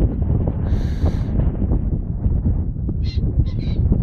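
A two-day-old calf calling: one rough bawl about a second in and a few short calls near the end, over wind rumbling on the microphone.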